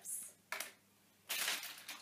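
Metal paper clips clinking as they are handled, a light jingle at the start followed by two short bursts of clatter, about half a second in and at about a second and a half.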